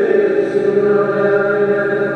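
Slow, chant-like sacred music with long held notes.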